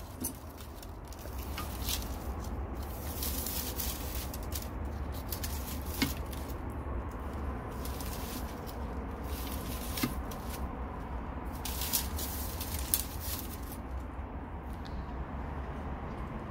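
Steady outdoor background noise, a low rumble with hiss, broken by a few soft clicks and knocks.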